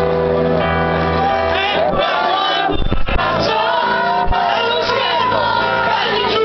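Live acoustic pop ballad: a male voice singing held, sliding notes over acoustic guitar and grand piano, with a deep piano bass line. A couple of low thumps come about three seconds in.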